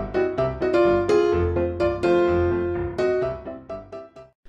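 Background music led by piano: a run of struck notes over a low bass.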